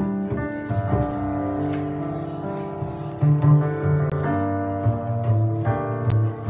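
Acoustic jazz played on a plucked upright double bass and a piano: low bass notes move under held piano chords, with no vocal.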